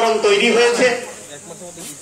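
A man's voice speaking for about the first second, then a quieter stretch of background noise.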